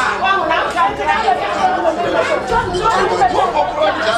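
Several people talking over one another in a crowded room: overlapping, excited chatter with no single voice standing out.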